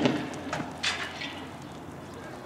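A tear gas canister landing: a loud bang dying away, then two sharp clatters about half a second and a second in as the canister strikes the road.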